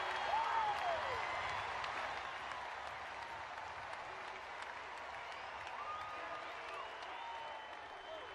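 Large ballpark crowd applauding and cheering for a home run, loudest at first and easing off gradually, with faint voices and a few whistle-like calls in the crowd noise.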